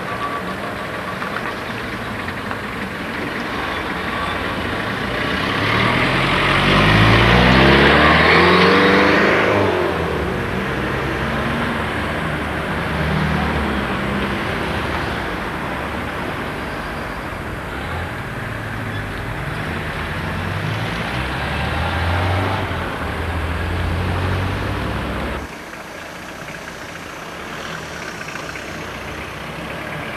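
Street traffic at a pedestrian crossing: car engines running, with one car pulling away and speeding up, loudest about six to ten seconds in, its engine pitch rising. More engine sound follows before the sound drops suddenly about three-quarters of the way through.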